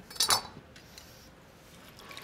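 Two quick knocks on a wooden cutting board as a cut lemon and knife are handled, then low kitchen room tone.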